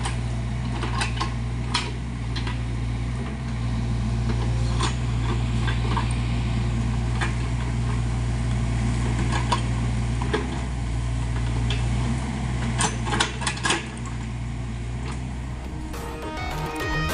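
SANY mini excavator's diesel engine running steadily under digging load, with scattered sharp knocks from the bucket working the soil, several close together near the end.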